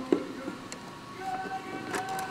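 Handling clicks from a vintage bakelite telephone case as its cover is worked open: one sharp click just after the start, then a few fainter ones. Faint background music with held tones runs underneath.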